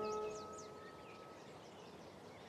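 A held chord of background music fades away over the first second or so while a few quick bird chirps sound near the start. After that only faint outdoor ambience remains.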